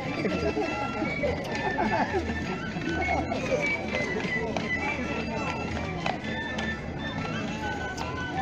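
Live street-festival music, short held melody notes over a low drum beat about twice a second, mixed with crowd chatter.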